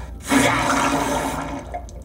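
Cartoon sound effect of a watery rush that starts suddenly a moment in and fades away over about a second.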